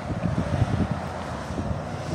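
Wind noise on the microphone: an uneven low rumble that rises and falls in small gusts.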